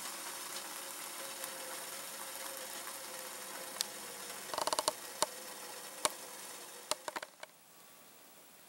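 Steady hiss of a homemade double-wall alcohol stove burning under a metal kettle, with a few sharp clicks and a quick run of ticks about four and a half seconds in. The hiss cuts off suddenly shortly before the end.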